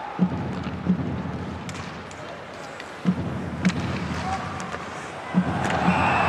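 Ice hockey game broadcast sound: steady arena crowd noise with a few low thumps coming in pairs, the crowd growing louder near the end as play moves in on the net.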